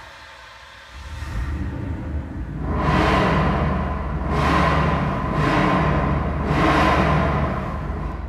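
Logo sting sound design: a low rumble builds about a second in, then three whooshing swells rise and fall over music.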